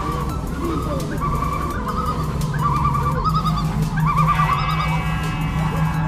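Suspended roller coaster train running on the track with a steady rumble, riders giving wavering screams, and a high squealing tone starting a little after four seconds in.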